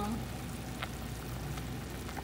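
Chicken soup simmering in an uncovered clay pot over a lowered gas flame: a steady bubbling hiss, with one light click a little under a second in.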